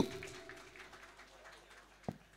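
A man's amplified voice breaks off and its echo dies away over about a second and a half, leaving only faint background.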